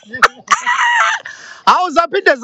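A loud, high crowing call like a rooster's, held for under a second about half a second in, after two short bursts of laughter.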